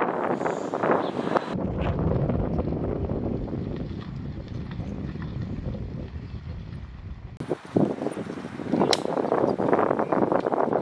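Outdoor wind noise on the microphone, a low rumble, with the background changing abruptly at the shot cuts. A sharp click comes near the end.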